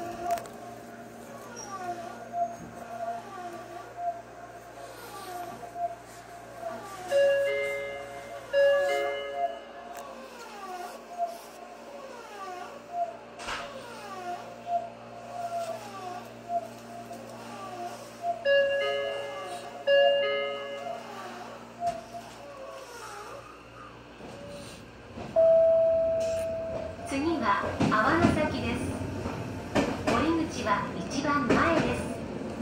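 Electric commuter train standing at a station, its low hum running under a steady stream of short chirps, with a chiming signal of stacked notes heard twice, about eleven seconds apart. The hum stops about 24 s in, a single steady tone sounds for over a second, and the train's running noise rises near the end as it moves off.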